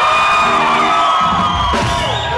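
A live band playing steady held chords while a crowd whoops and shouts long calls over it.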